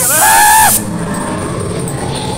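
A short high-pitched scream lasting under a second at the start, with a loud burst of hiss over it, then a low steady background rumble.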